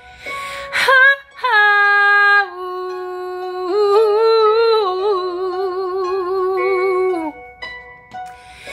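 A woman's voice humming a wordless melody in long held notes that glide between pitches, with vibrato in the middle. A short breathy noise comes just before the first note.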